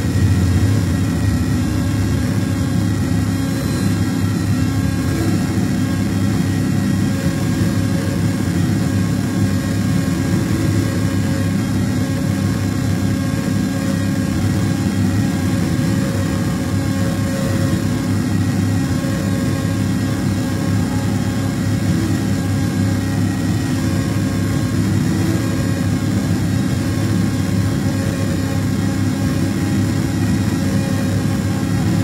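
Live noise set played loud through a PA: a dense, steady low rumble with a few held tones above it and no beat.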